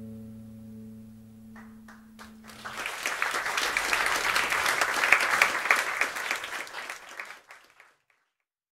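The band's last held chord dies away, then audience applause breaks out about three seconds in, swells, and fades away near the end.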